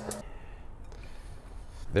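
Faint steady whir of an air fryer oven's convection fan running with a rotisserie chicken turning inside; a low hum drops out just after the start.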